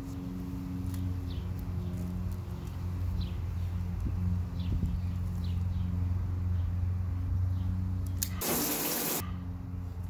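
Willow stems and leaves rustling as they are stripped and snipped by hand, over a steady low machine hum. About eight and a half seconds in, a brief loud rustle.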